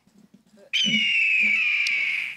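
One long whistled bird call, meant as a nighthawk's call. It starts about two-thirds of a second in and slides slowly down in pitch for about a second and a half.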